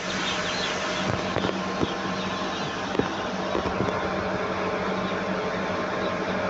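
A mass of day-old chicks cheeping all at once, many overlapping high peeps, over a steady low hum. A few sharp knocks come between about one and three seconds in, typical of plastic chick crates being handled.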